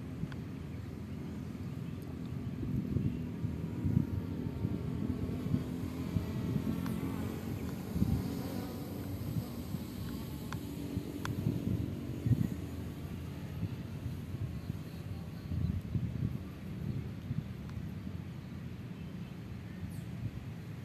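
Wind buffeting the microphone in uneven gusts: a low rumbling noise that swells and fades, with a couple of faint clicks near the middle.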